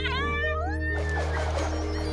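Cartoon studio-logo jingle: steady music with a small cartoon chick's squeaky call that slides up and then back down, and a sparkly shimmer in the second half.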